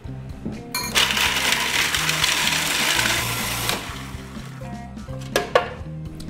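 Food processor grinding whole roasted almonds with sugar into a meal, starting about a second in and running for about three seconds before stopping. Two sharp clicks follow near the end.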